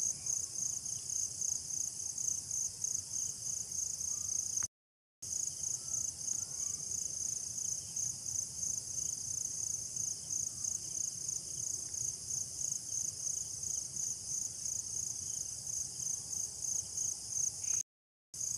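Crickets chirping in a steady chorus: a high, even pulsing trill repeating several times a second. The sound cuts out completely for about half a second near five seconds in.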